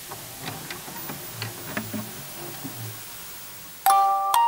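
Quiet clock ticking, about three ticks a second, over a low dark drone. Near the end a loud bell-like chiming melody comes in.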